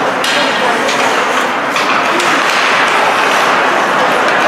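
Ice hockey game sound in an arena: a steady din of spectator chatter and skating, with a couple of sharp knocks from the play, one just after the start and another a little before halfway.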